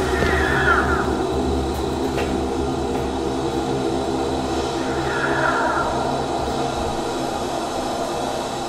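A steady low hum with several held tones, joined by faint brief gliding tones just after the start and again about five seconds in.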